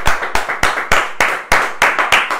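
People clapping their hands together in a steady rhythm, about three claps a second.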